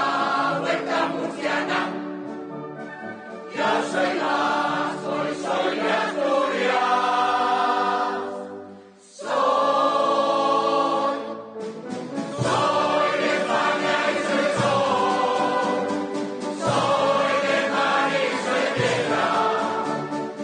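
Large mixed choir of men and women singing full-voiced in long held phrases, with a concert band accompanying. About nine seconds in the sound dies away briefly, then choir and band come back in strongly.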